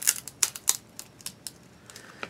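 Irregular sharp clicks and ticks of plastic sample packaging being handled and pried at, quick at first and thinning out after about a second.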